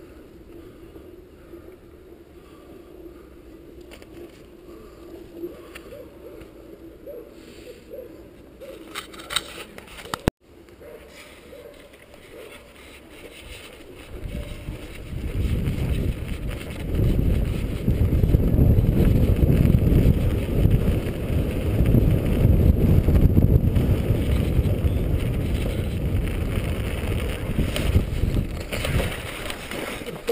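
Road bicycle on home-made spiked tyres rolling over snow-covered ice. A steady low hum comes from the tyres first, and from about halfway through a much louder low rumble takes over.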